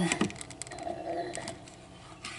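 Light clicks and taps of small hand-held items being handled: a quick cluster in the first second, then a couple more about a second and a half in.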